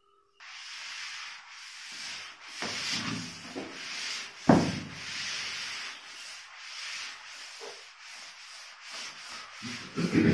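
Whiteboard eraser rubbed back and forth over a whiteboard, wiping off marker writing: a steady scrubbing hiss in repeated strokes that starts about half a second in. A single sharp thump about four and a half seconds in is the loudest moment.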